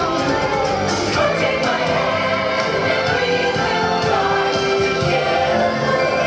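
Parade music with a choir of voices singing, loud and continuous, from the illuminated night parade's soundtrack.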